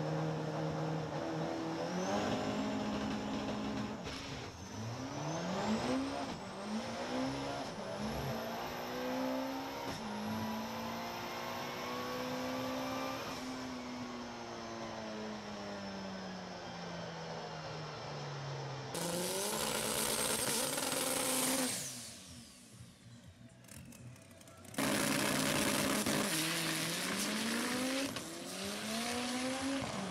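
Turbocharged 8-valve Volkswagen Gol drag car on a record pass, heard from inside the cabin. The engine note climbs and drops back at each of several quick upshifts, then holds a long note that sinks as the car slows. Later comes a loud rush of noise with a brief quieter gap in it.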